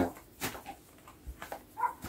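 A flyswatter swat: one sharp slap about half a second in, then a few faint knocks and a brief high whine near the end.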